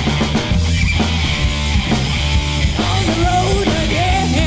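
Loud rock music from a full band, with electric guitar, bass and drums. A sung line comes in near the end.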